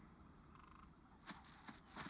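Faint swamp ambience of frogs and insects chirping steadily, with a few soft footsteps in the second half.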